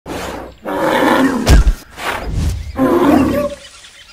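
Animal-call sound effects: about four loud calls, each half a second to a second long, with a heavy low thump about a second and a half in.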